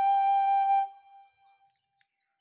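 Bamboo side-blown flute holding the tune's last long, steady note, which ends a little under a second in with a brief fading tail.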